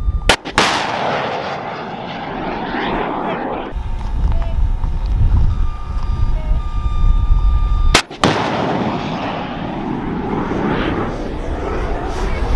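Two FIM-92 Stinger missile launches about eight seconds apart. Each is a sharp bang followed by a loud rushing noise from the rocket motor that fades over a few seconds as the missile flies away.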